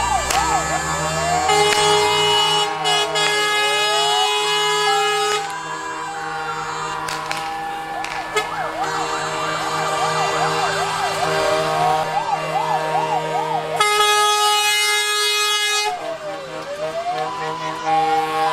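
Several fire engine sirens sounding together, sweeping slowly up and down in a wail and switching to a fast yelp partway through, over long steady blasts of truck air horns.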